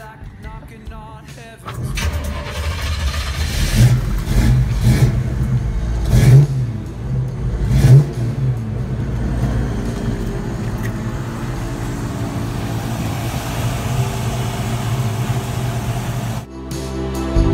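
V8 engine of a custom 1951 Chevrolet 3100 pickup starting about two seconds in, revved in four quick blips, then settling to a steady idle.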